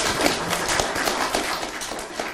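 Audience applauding: many hands clapping in a dense patter that eases off slightly toward the end.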